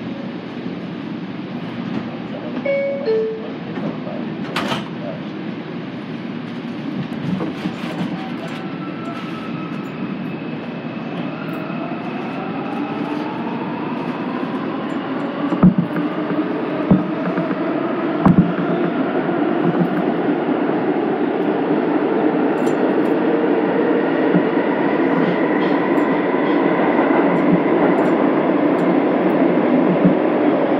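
Bombardier R142 subway car pulling out of a station, heard from inside the car. A short two-note falling door chime and the doors closing come first. Then the traction motors' whine rises in pitch and grows steadily louder as the train accelerates, with a few sharp knocks from the wheels over the rails.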